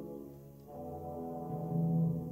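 Symphony orchestra playing sustained chords with brass prominent; the sound thins and dips about half a second in, then swells again with a strong low held note near the end.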